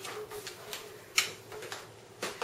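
A few faint clicks in a quiet room, with one sharper tick just after a second in.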